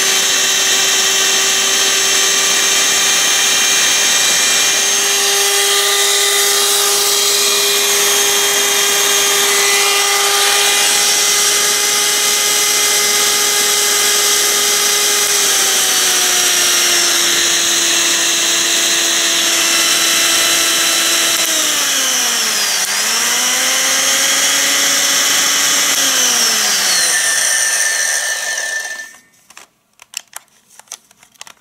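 Vintage 140-watt electric hand mixer running unloaded with its beaters fitted: a loud, steady motor whine. Its pitch steps down about halfway through as the speed switch is moved down, dips sharply and partly recovers, then runs down and stops about a second before the end.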